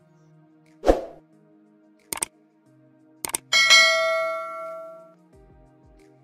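Soft background music. Over it come a thump about a second in, two short clicks, and then a bright bell ding that rings and fades over about a second and a half. These are the sound effects of a subscribe-button animation with a notification bell.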